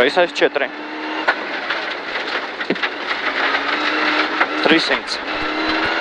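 Rally car engine running at speed over a gravel stage, heard from inside the cabin with steady gravel and road noise.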